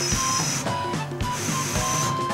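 Noodles being slurped, a hissy sucking sound heard at the start and again near the end, over background music.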